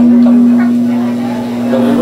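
Steady low electrical hum from the hall's PA sound system, a constant buzzing tone that doesn't change, with faint voices underneath.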